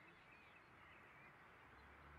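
Near silence: faint background ambience with a few faint bird chirps.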